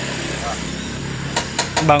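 Two sharp hammer knocks on the pen's wooden frame about one and a half seconds in, over a steady low background hum.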